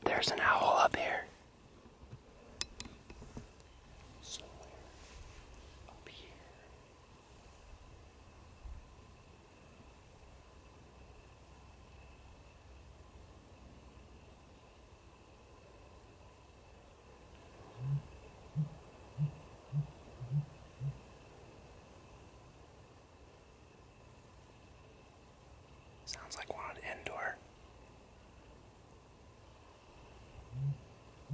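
A bird calling from the trees with a series of six short, low hoots about half a second apart, roughly two-thirds of the way through. Around it are brief whispered words and a faint steady high tone.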